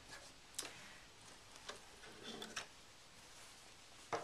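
Near silence: the sewing machine has stopped, with a few faint clicks and rustles as the fabric is handled at the machine.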